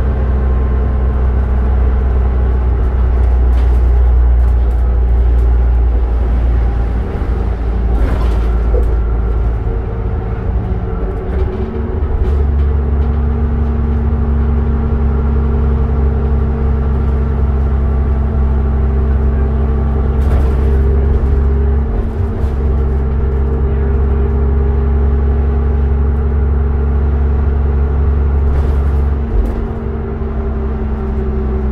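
Inside a 2007 New Flyer D40LF diesel transit bus under way: the engine and drivetrain make a steady low drone, with a higher tone that steps up about twelve seconds in. A few brief rattles come through along the way.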